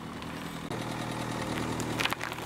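Car engine idling steadily, its low hum a little louder from under a second in, with no crunching.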